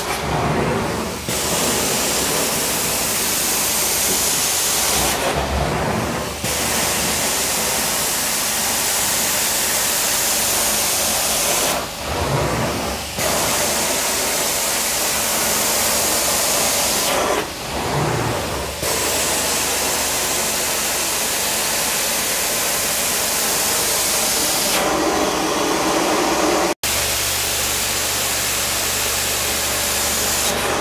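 Truckmount carpet-cleaning wand drawn across carpet: a steady loud rush of vacuum suction and spray through the wand, easing briefly about every five or six seconds. It cuts off abruptly near the end and starts again.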